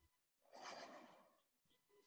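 A person's soft exhaled sigh, under a second long, a little way in, in an otherwise near-silent pause.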